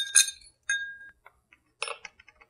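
Spoon stirring a drink in a small glass, clinking against the glass. One clink about two-thirds of a second in rings on at one pitch for nearly half a second.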